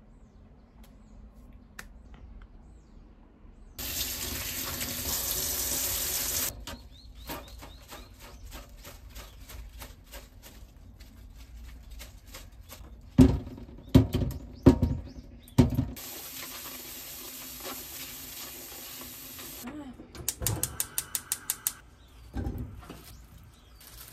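A kitchen tap runs into a stainless-steel sink in two spells, with small rinsing clatters between them. In the middle come a few loud knocks as washed food is shaken dry in a plastic colander. Near the end there is a quick run of about ten clicks.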